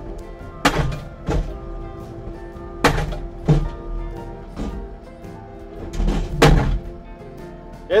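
Danuser SM40 hydraulic post-driver hammer striking a steel fence post: about seven heavy thuds at uneven intervals as it drives the post down through hardpan, heard under background guitar music.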